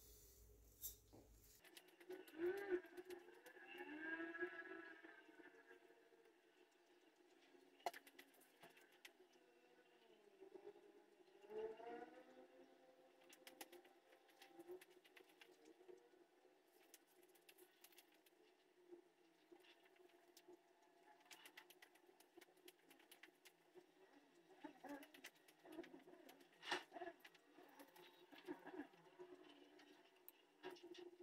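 Near silence: a steady faint room tone with scattered faint ticks, and a few faint cooing calls, about two to five seconds in and again around twelve seconds.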